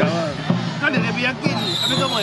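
Temple procession drum beating about twice a second, with voices over it; a high steady tone comes in about three-quarters of the way through.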